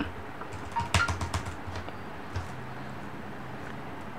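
Computer keyboard keys tapped a few times in the first half, short separate clicks, followed by a faint steady low hum.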